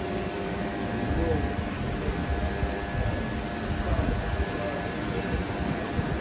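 Corded electric hair trimmer buzzing steadily as it is worked along the back of the neck, under indistinct background voices.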